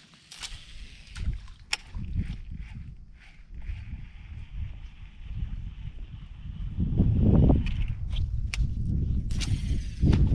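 Gusts of wind buffeting the microphone and water lapping against a small boat, loudest about seven seconds in, with a few sharp clicks scattered through.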